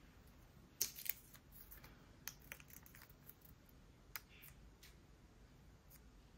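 Faint, scattered clicks and taps of plastic nail-stamping tools being handled against a metal stamping plate: a clear stamper and a card scraper. Two sharper clicks come about a second in, then a few softer taps.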